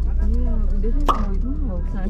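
Low steady rumble of a car's running engine heard inside the cabin, under soft talking, with one sharp click about a second in.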